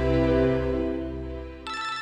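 Mobile phone ringtone playing a melodic tune of sustained notes, fading away near the end as another note comes in.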